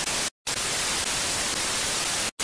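Analog TV static: a steady hiss of white noise across the whole range, cutting out completely for a moment about a third of a second in.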